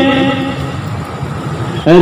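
A man speaking into a microphone: one long drawn-out syllable that ends about half a second in, then a pause filled with road traffic noise, and his speech starting again near the end.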